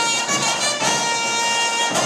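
Trumpet solo playing long held notes, backed by a band with drums.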